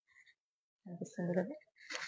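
A pause close to silence, then, about a second in, a woman's voice murmurs low and soft for under a second. Clear speech starts again right at the end.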